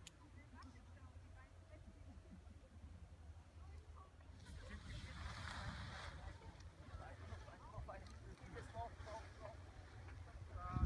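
Faint outdoor ambience: a low wind rumble on the microphone and distant voices, with a brief rush of noise about five seconds in.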